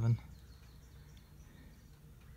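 A spoken word ends right at the start, then only faint, steady background noise with a few very faint, brief high chirps.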